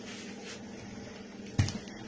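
A steady low hum under quiet room noise, broken by a single short knock about one and a half seconds in.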